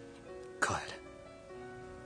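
Soft background music with held notes; about half a second in, a man's brief, breathy voice cuts in, a short line that sounds close to a cough or throat clearing.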